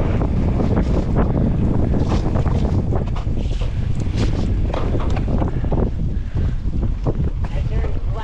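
Wind buffeting the microphone of a mountain bike rider's action camera, over the steady noise of knobby tyres rolling on wet, muddy dirt and the bike rattling on the bumps.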